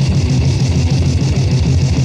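Loud, dense grind metal from a 1990 band demo: the full band playing with guitar, steady and unbroken.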